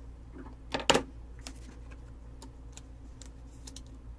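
Light clicks and taps from trading cards being handled on a table, with a louder double click about a second in.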